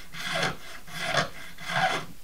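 Small half-round file rasping across cow pastern bone in three strokes, about two-thirds of a second apart, taking the corners off a bone fish hook blank to round it.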